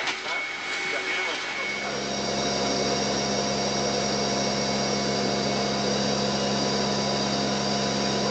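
Steady drone of a C-130 Hercules's four turboprop engines heard inside the cargo hold, a low hum with several constant whining tones over it. It sets in abruptly about a second and a half in, after brief voices.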